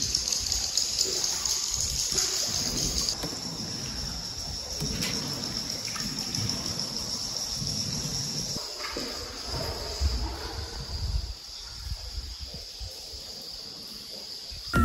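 Water trickling and lapping inside a river cave, with a steady high-pitched chirring over it.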